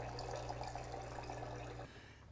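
Gaggia Babila espresso machine's pump humming steadily as it primes a new AquaClean water filter, with water running from the spout into a steel pitcher; the hum cuts off near the end as priming finishes.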